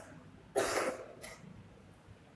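A person coughing to clear the throat: one strong cough about half a second in, followed by a shorter one.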